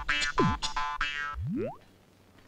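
Comedy background-score sound effects: two quick falling 'boing'-like pitch drops, then one rising glide, over short bright musical stabs. It all stops sharply just before the end.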